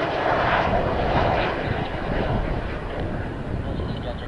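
Mitsubishi F-2's single turbofan jet engine running as the fighter rolls along the runway after touchdown: a steady jet roar that eases slightly in the second half.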